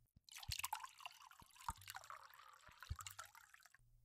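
Wine poured into a glass: a trickling, splashing pour that lasts about three and a half seconds, with a few light knocks.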